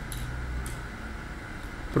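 A low steady hum with a couple of faint clicks: room tone.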